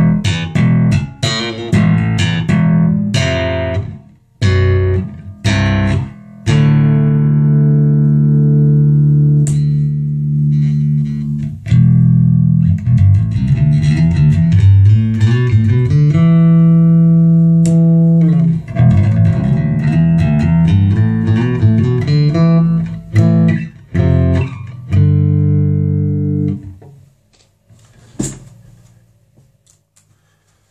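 Cort Curbow four-string active bass guitar played through an amplifier with its onboard active EQ switched in. Short, sharply attacked notes for the first few seconds give way to long held low notes and runs. The playing stops a few seconds before the end, followed by a single click.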